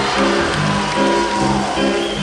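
Live band music in a short instrumental stretch between vocal lines: an evenly paced accompaniment of low notes and chords stepping about twice a second.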